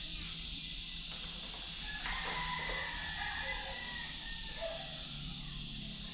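Quiet room ambience: a steady hiss with faint, distant calls from about two seconds in.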